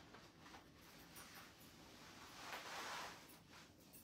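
Near silence: room tone, with a faint soft swish that swells and fades about two and a half seconds in.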